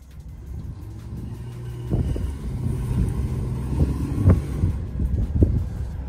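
Stock 2008 Jeep Wrangler JK's engine running as it drives on loose sand, growing louder about two seconds in as the Jeep comes closer. A few sharp knocks stand out over it.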